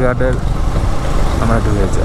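Motorcycle engine running steadily with wind rush on the microphone while riding, and a voice talking briefly at the start and again near the end.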